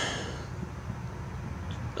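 Quiet steady low background hum with light hiss and a faint high whine: room tone, with no distinct event.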